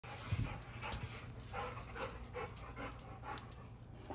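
A dog panting in short breaths, about two or three a second, with a couple of low thumps in the first second.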